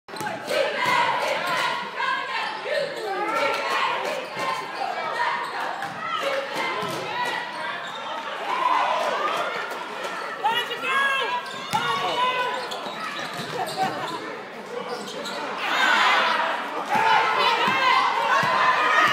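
Basketball game in a large gym: a ball dribbling on the hardwood floor, with players and spectators calling out in the echoing hall. The crowd noise swells briefly near the end.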